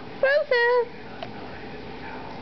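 Boxer puppy giving two short, high-pitched whines in quick succession, over a steady background hiss.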